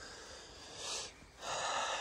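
A man breathing audibly close to the microphone: a short breath about a second in, then a longer intake of breath just before he speaks again.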